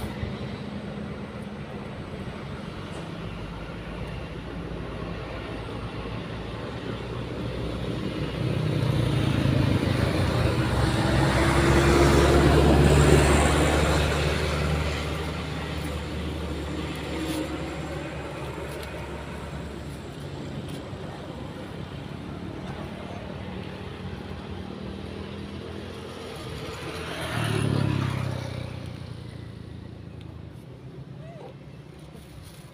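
Road traffic passing: an engine hum runs throughout, a heavy vehicle's engine swells up and fades away over several seconds, loudest about twelve seconds in, and another vehicle passes more quickly near the end.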